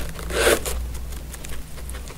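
A guinea pig pulling dry timothy hay out of a cardboard hay box and chewing it: one loud tearing pull about half a second in, with small crunching clicks around it.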